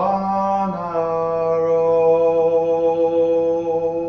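Unaccompanied male voice holding one long sung note, stepping slightly down in pitch about a second in, in a slow dirge.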